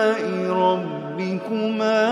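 A man reciting the Quran in a melodic, chanted style, holding a long drawn-out note. The pitch steps down shortly after the start, holds low, then rises again near the end.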